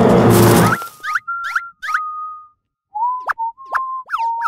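Background music cuts off under a second in. Then come two runs of short whistle-like cartoon tones, each held near one pitch and broken by quick swoops up and down, with a brief pause between the runs.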